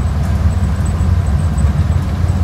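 Volkswagen Kombi van driving slowly, its engine and road noise heard from inside the cab as a steady low rumble.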